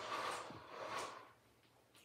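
Fabric of a Roman shade rustling softly as it is pushed up by hand on its spring lift system and folds into pleats, with a faint click about half a second in. The rustle dies away about a second and a half in.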